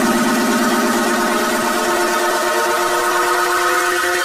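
Dance-music synthesizer holding a sustained chord with no drum beat. The buzzing low note fades out about halfway through, and the upper notes ring on.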